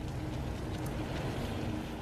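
Steady rushing roar of molten lava churning.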